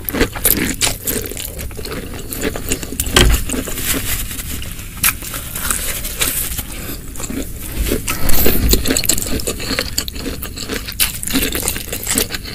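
Close-miked chewing of spicy snow fungus (white tremella) in chili sauce: a steady run of crisp crunches and wet mouth clicks. Near the end, a wooden spoon scoops through the saucy food in the dish.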